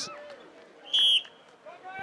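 A short, high-pitched start signal sounds once about a second in, setting off a timed strongman run, over a faint crowd murmur.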